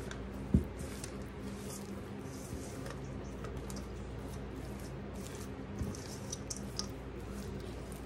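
Rubber spatula stirring a thick shredded-cheese mixture in a stainless steel bowl: soft squishing and scraping, with a sharp knock against the bowl about half a second in.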